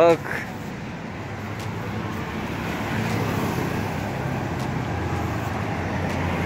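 Road traffic passing on the street alongside: a steady wash of car noise that builds gradually over the first few seconds, with a low engine hum coming in near the end.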